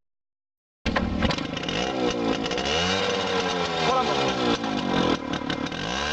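Motorcycle engine revving close to the exhaust, its pitch rising and falling in several swells. It cuts in suddenly about a second in, after a moment of silence.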